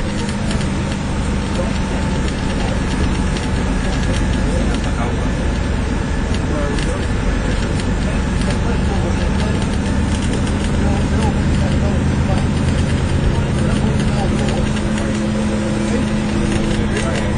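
Interior sound of a moving Alexander Dennis Enviro400 MMC double-decker bus: the engine running steadily under load with road noise, heard inside the passenger saloon, with indistinct passenger chatter mixed in.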